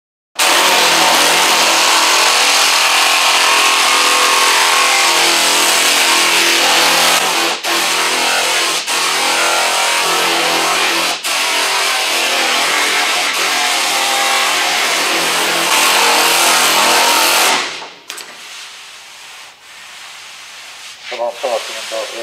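Pneumatic air file (straight-line sander) running against body filler on a car's front fender: a loud, steady hiss with a steady buzz under it, broken by a few short stutters. It cuts off near the end.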